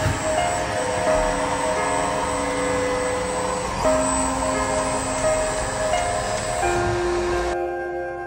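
Background music with held notes changing about once a second, over a steady whirring from a desktop diode laser engraver as its gantry runs. The whirring cuts off suddenly near the end, leaving only the music.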